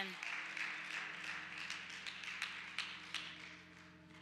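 Scattered applause from a church congregation, a spread of sharp hand claps that gradually dies away. About a second in, a low sustained chord from a musical instrument comes in underneath.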